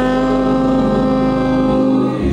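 Gospel choir and organ holding one sustained chord, steady in pitch; the low bass note drops out near the end.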